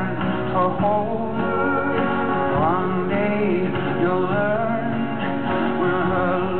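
Live country music: a man singing lead with women's voices in harmony over a strummed acoustic guitar, in a slow, steady song.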